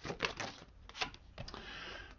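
Deck of tarot cards being shuffled by hand: a quick run of small clicks and flicks that thins out about halfway through.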